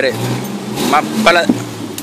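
An off-road 4x4 SUV's engine running steadily at low revs while the vehicle is manoeuvred slowly over a fallen log, with shouted Spanish driving directions over it.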